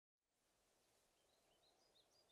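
Near silence: a brief dead-silent gap, then a very faint hiss fades in, with faint high bird chirps from about a second and a half in, the ambience of an anime meadow scene.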